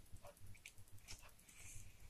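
Near silence over a low steady hum, with faint, brief rustles and light clicks as the glossy pages of a digibook are handled and turned.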